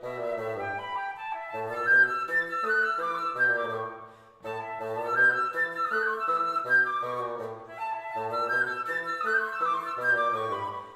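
A flute and bassoon duo playing. The bassoon repeats a low figure of short notes while the flute plays quick moving lines above it. There is a brief break about four seconds in, and then the phrase starts again.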